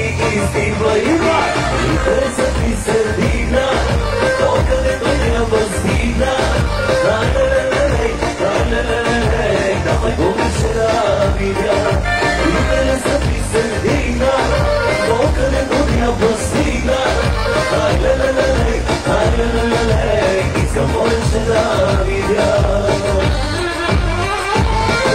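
Bulgarian pop-folk song played by a band with a male singer, with a steady beat and regular cymbal strikes.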